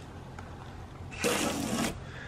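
Hose-end foam sprayer on a garden hose giving one short spray of soapy water onto a car's body panel, a hiss starting a little over a second in and lasting under a second.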